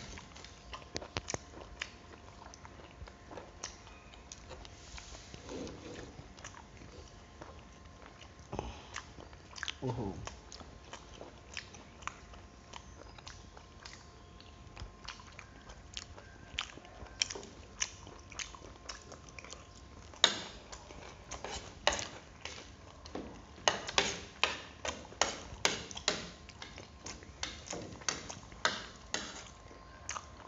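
People eating: chewing grilled pork, with many small clicks and taps of forks and spoons on ceramic plates, coming more often in the last third. A couple of brief vocal sounds, one a short falling hum about ten seconds in.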